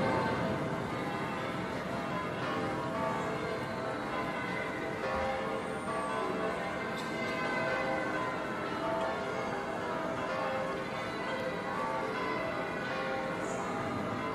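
Several large church bells pealing together, a steady, dense wash of overlapping bell tones.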